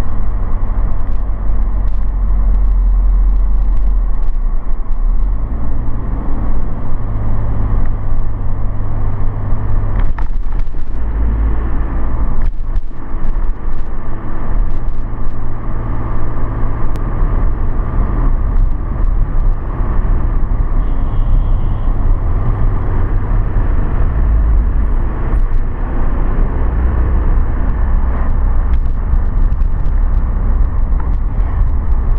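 Car driving along a road: a steady, loud rumble of engine and tyre noise, heaviest in the low bass.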